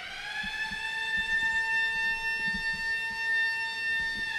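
A siren: one tone that rises quickly in pitch, then holds steady and loud.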